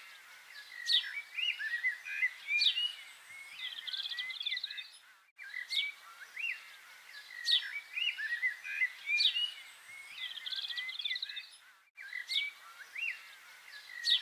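Birdsong: several short chirps and sharp downward-sweeping calls, with a brief high trill. The same passage of song comes round again about every six and a half seconds after a short break, like a looped recording.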